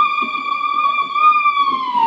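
A person's long, high-pitched "wheee" cheer held on one note, dipping in pitch near the end, over a faint crowd murmur.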